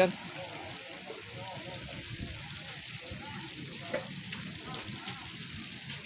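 Faint, indistinct background voices over a steady outdoor hiss, with a light trickle of water from the pond.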